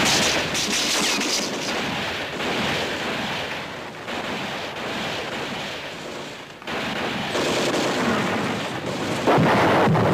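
Battle sound effects: a continuous rumble of gunfire and explosions, with a sudden louder blast about seven seconds in and another near the end.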